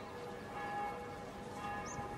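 Bells ringing faintly, several steady pitches sounding together.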